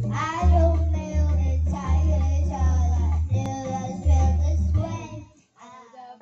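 A young girl singing along into a karaoke microphone over a pop backing track with a steady bass line. The music drops out briefly about five seconds in.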